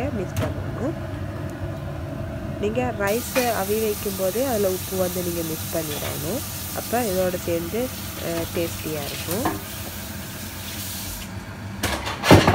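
A person's voice talking or humming, over a steady hiss that starts about three seconds in and stops near the end.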